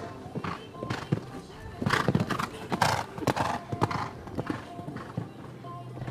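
A show-jumping horse cantering on a sand arena: uneven hoofbeats, busiest in the middle, as it goes towards and over a fence.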